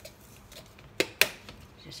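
Two sharp plastic clicks about a fifth of a second apart as a supplement bottle's flip-top cap is handled.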